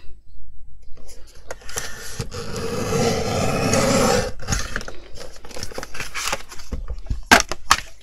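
Fiskars bypass paper trimmer's blade head sliding down its rail and cutting through chipboard: a steady scraping rasp lasting about three seconds. It is followed by a few short clicks and knocks, two of them sharp near the end.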